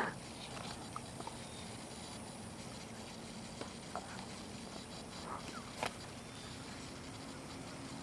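Faint, steady drone of a distant electric RC P-47 Razorback's motor and propeller flying overhead, with a few small ticks, one a little before six seconds in.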